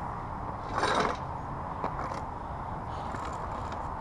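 Steady outdoor noise with low wind rumble on the microphone. A short breathy sound comes about a second in, and two faint clicks follow around the two-second mark.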